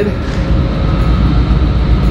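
Steady low rumble with a faint, constant high whine: background machinery hum of an underground parking garage.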